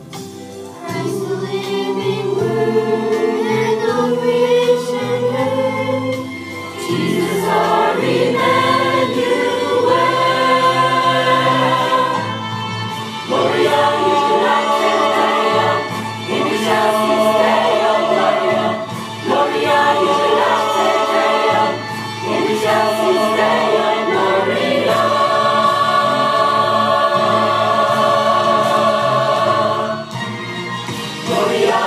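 Mixed choir of women's and men's voices singing a cantata, one sustained phrase after another with short breaks between.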